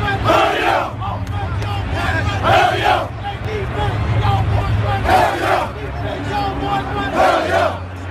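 Football team in a tight huddle shouting together: four loud group yells about two seconds apart, with excited chatter between them over a steady low rumble.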